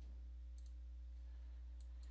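Faint computer mouse clicks, a pair about half a second in and another near the end, over a steady low electrical hum.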